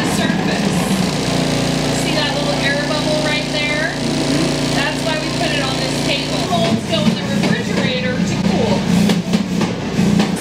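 Electric vibrating table for chocolate molds running with a steady hum, shaking a metal tray of filled chocolate molds to work the air bubbles out of the chocolate. The deepest part of the hum falls away about two-thirds of the way through. Voices murmur over it.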